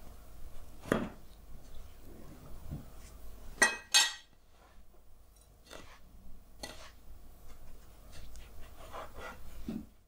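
A metal fork clinking against a ceramic plate, loudest in two sharp clinks close together about four seconds in. Later come fainter scratchy ticks as fingers press breadcrumbs onto a fish fillet in the plate.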